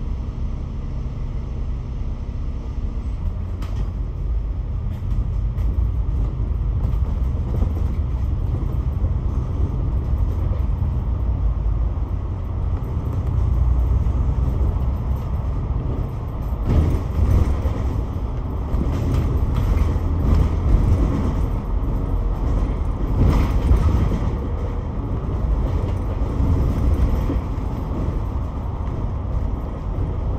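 Double-decker bus's diesel engine heard inside the cabin: idling at first, then pulling away about three seconds in and running along the road with a steady low rumble of engine and road noise. From the middle onward there is intermittent rattling of the bodywork.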